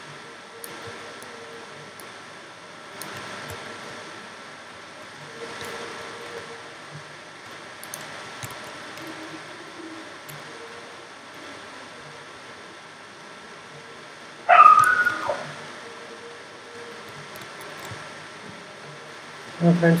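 Faint steady room hum, broken about 14 seconds in by a dog's short, high whine that falls in pitch and lasts under a second.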